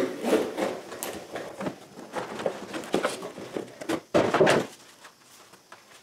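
A cardboard shipping box being opened and a long wrapped part pulled out of it: irregular scraping, rustling and knocks of cardboard and packing. The loudest stretch comes about four seconds in, and it is quieter after that.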